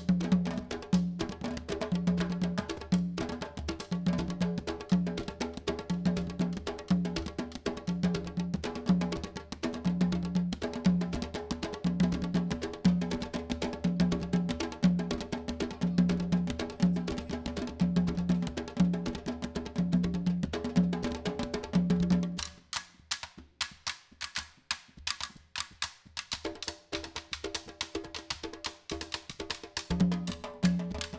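Candombe drum ensemble of barrel drums (chico, repique and piano) played with one stick and one bare hand each, in a steady rolling rhythm with a repeating low drum tone and sharp wooden stick clicks. About three-quarters of the way through, the low drum tones stop for a few seconds, leaving mostly the stick clicks, before the drums come back in.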